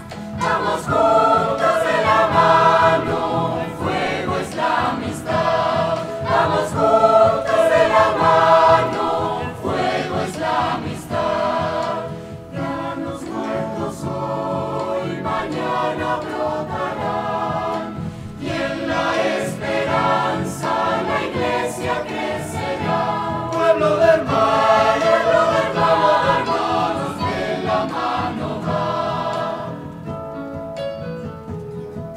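A mixed choir of children and adult men and women singing a choral piece together.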